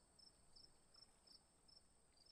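Near silence, with faint insect chirping: short high chirps repeating three to four times a second over a steady high-pitched drone.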